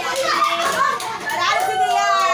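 Several women's voices shouting and calling out excitedly at once, high-pitched and overlapping, with one long drawn-out call near the end.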